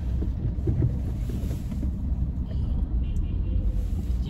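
Car interior noise while driving: a steady low rumble of engine and tyres heard inside the cabin.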